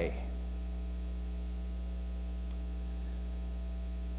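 Steady electrical mains hum, low and unchanging, with a stack of higher overtones above it.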